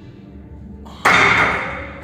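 A weightlifter's sudden, forceful exhale while pressing a heavy barbell on an incline bench, loud about a second in and trailing off over the next second.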